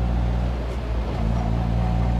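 Old Tofaş car's engine running at a steady speed while driving, heard from inside the cabin as a low, even hum.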